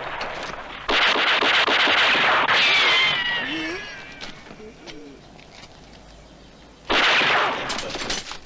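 Film soundtrack of a firefight: rapid bursts of automatic rifle fire, about a second in and again near the end. Between the bursts, a high wail falls in pitch, followed by a quieter stretch with a few short low cries.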